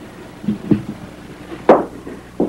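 Two soft knocks about half a second in, then a sharp, loud knock near the end, over a steady low hum.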